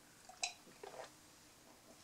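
Faint mouth sounds of someone sipping and swallowing iced tea from a glass: a short, sharper one about half a second in and a softer one about a second in.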